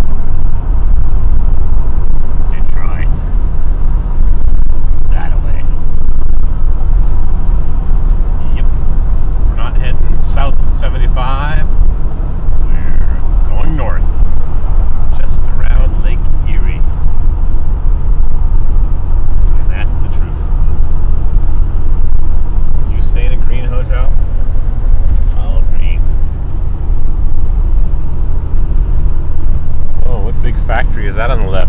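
Steady, loud low rumble of road and wind noise heard from inside a car cruising at highway speed.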